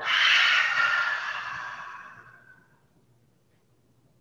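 A woman's forceful exhale through the mouth, a breathy rush that is strongest at the start and fades away over about two and a half seconds. It is a breath-work exhale, pushing out as much air as quickly as possible while bowing forward.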